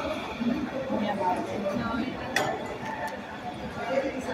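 Chatter of voices in a large room, with a china clink about two and a half seconds in.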